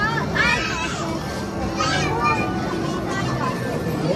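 Busy arcade din: children's high-pitched voices calling out twice over a steady mix of game music and sound effects from racing arcade machines.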